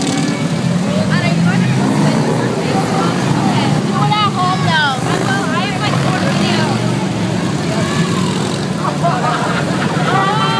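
Harley-Davidson motorcycles' V-twin engines rumbling steadily as a line of bikes rides past, with spectators' voices and calls over them, most around the middle.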